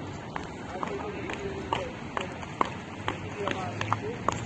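Footsteps of several people walking on hard paving, sharp shoe clicks at about two a second, with voices in the background.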